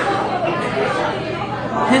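Background chatter of diners talking in a busy restaurant, a steady mix of indistinct voices.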